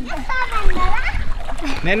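Young children's voices, with water splashing as children play in a shallow swimming pool.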